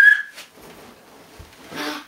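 A girl's high, steady-pitched shriek ends abruptly in the first half second. Faint rustling follows, then a short breathy vocal sound near the end.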